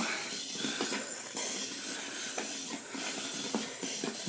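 Small line-follower robot's electric gearmotors running at about 80% speed: a steady whirring hiss with a few faint ticks.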